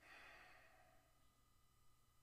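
Near silence broken by a faint breath that lasts about a second at the start, over a steady faint hum.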